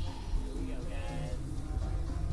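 A young man's voice, a short wordless murmur or sound from one of the riders, over a steady low rumble.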